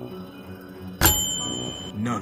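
A single bell-like ding about a second in, ringing on a high steady tone for just under a second before cutting off, over low background music.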